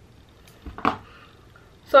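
A single short click with a soft low thump a little under a second in, over quiet room tone, followed by a spoken word near the end.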